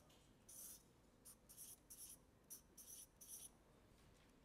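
Faint scratchy rustling: about eight short, hissy strokes in a row over a near-silent room.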